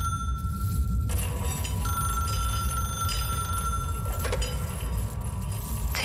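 Telephone ringing: a steady high tone that breaks off about a second in, then sounds again until about four seconds in, over a continuous low rumbling drone.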